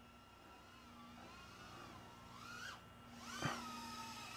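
Faint whine of the BetaFPV Pavo20 Pro's brushless motors and 2.2-inch propellers in flight, its pitch swelling and falling back twice as the throttle is worked.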